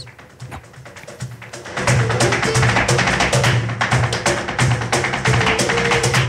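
Flamenco music, quiet at first and loud from about two seconds in, with a quick run of sharp rhythmic strikes over sustained low notes.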